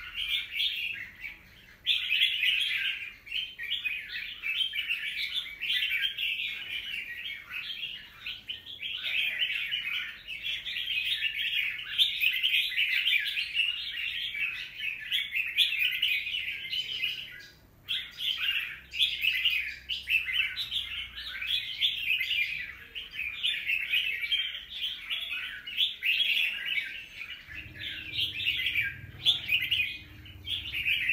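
Red-whiskered bulbul singing a rapid, almost unbroken chattering song, with short pauses about a second and a half in and just past the middle.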